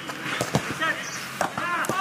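A football kicked on a grass pitch, a few sharp thuds about half a second, a second and a half and nearly two seconds in, with short shouted calls between the kicks.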